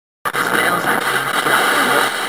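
A vintage FM radio being tuned across the dial: steady static hiss with broken snatches of broadcast voices, cutting in suddenly just after the start.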